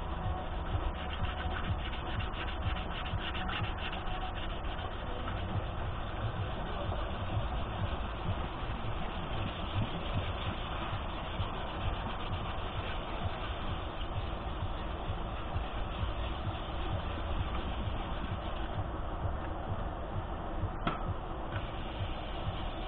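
Plastic car headlight lens being hand-sanded dry with fine-grit sandpaper, a continuous back-and-forth rubbing, to strip its old cracked lacquer coat. A short sharp click near the end.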